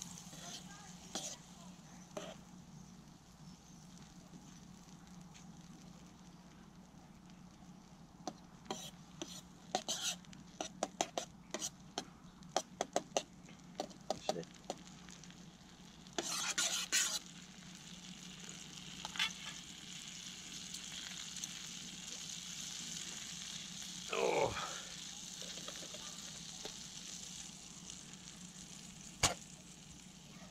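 Butter melting and sizzling in a frying pan on a camping stove, with a metal fork stirring it. The fork taps and scrapes against the pan in a run of quick clicks through the middle. A brief falling tone comes about three-quarters of the way in, and a single sharp knock near the end.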